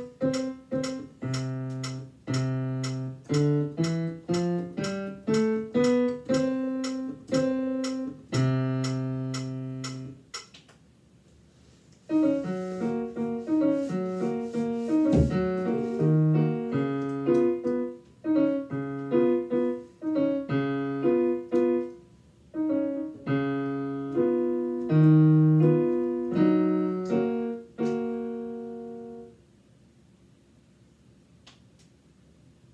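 Digital piano being played: a slow melody of single notes over held bass notes stops about ten seconds in. After a short pause a second, busier passage follows, and its last chord dies away near the end.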